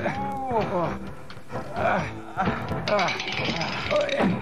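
Cartoon voices grunting and straining with effort, a string of short wordless vocal heaves with rising-and-falling pitch, over light background music.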